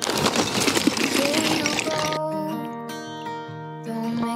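Lump charcoal poured into a brick charcoal kiln, a loud clattering rush of many small knocks for about two seconds. Background acoustic guitar music with singing plays throughout.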